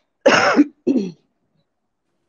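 A woman coughs twice into her hand, a harsh cough followed by a shorter, weaker one.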